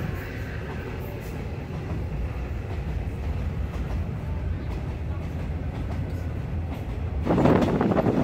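Passenger train carriage running on the rails, heard from inside with its windows open: a steady low rumble and rattle.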